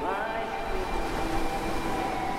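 Trailer sound design: a steady wash of noise over a few held ambient tones, opening with a short rising pitch sweep.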